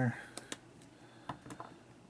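A string of light, irregular plastic clicks and taps, about six over two seconds, from a small hobby paint pot and brush being handled on a desk.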